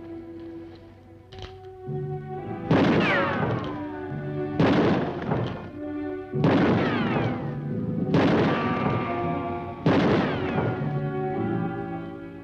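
Five pistol shots about two seconds apart, each followed by a falling whine, over orchestral music.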